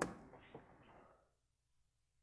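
A single sharp click right at the start as the last word ends, a couple of faint ticks about half a second in, then near silence: quiet room tone.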